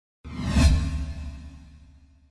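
Swoosh sound effect of an intro logo sting: it starts suddenly about a quarter second in with a deep low boom underneath, peaks about half a second in, and dies away over the next second and a half.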